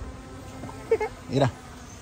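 A flying insect, such as a fly or bee, buzzing close by as a steady low hum, with a man's short spoken word about a second in.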